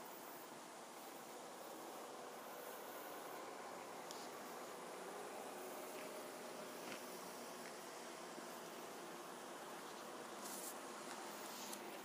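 Faint, steady outdoor background hiss with a few faint ticks.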